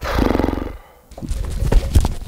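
A man's short, low, rough groan, then from just over a second in, a run of rustling, clicks and thumps from a clip-on lavalier microphone being handled.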